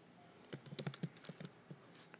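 Typing on a computer keyboard: a faint, quick run of keystrokes starting about half a second in.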